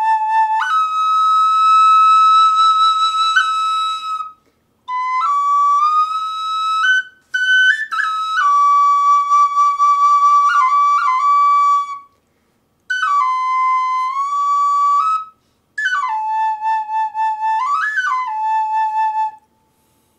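Tiny bamboo pocket flute played in five phrases of long held high notes, stepping and sliding between pitches, with short breaths between phrases. The tone is loud and carries well.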